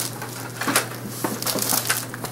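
Irregular rustling with a handful of short clicks and knocks: handling noise close to the microphone, as of someone shifting their clothing and moving about.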